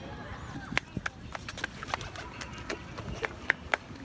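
A small child's quick, uneven footsteps on a brick-paved path: a run of sharp slaps, about three a second, starting about a second in.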